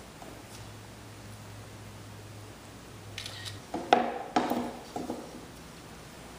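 A steady low hum that cuts off about three and a half seconds in, then several clunks and clicks as a DI box and its cable jacks are handled and plugged in.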